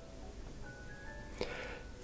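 Soft background music: a slow melody of short, bell-like held notes at changing pitches, with a brief hissy noise near the end.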